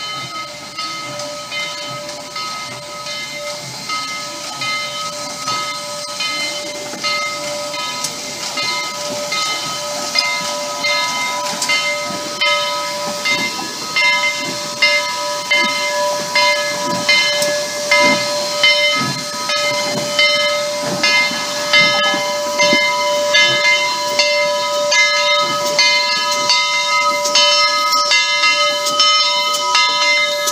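Southern Railway 4501, a 2-8-2 Mikado steam locomotive, moving slowly at close range. There is a steady hiss of steam with several steady high tones held under it. A rhythmic beat of chuffs and clanks grows louder and more regular through the second half.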